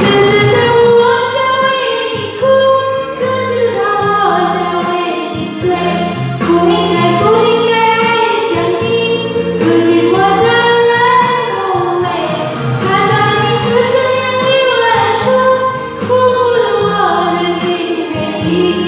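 A woman singing into a karaoke microphone over an amplified backing track, her voice holding and bending long notes above a steady bass line.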